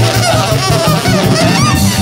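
Live free-leaning big-band jazz: a horn honks and squeals with bending, wavering high notes over a steady plucked double-bass line and drums.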